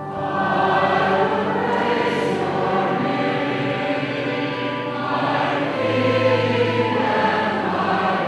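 A cantor and the congregation singing the Responsorial Psalm response together at Mass.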